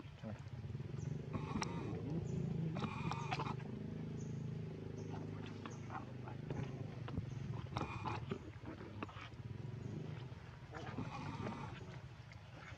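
Baby macaque giving short high-pitched cries, several separate calls spread over a few seconds, above a low steady murmur.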